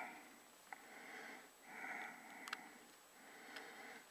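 Quiet breathing close to the microphone, two soft breaths, with a few faint clicks as LED leads are pushed into a solderless breadboard.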